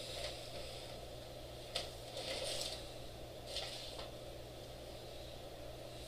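Quiet room tone with a steady low hum, broken by a few faint clicks and rustles.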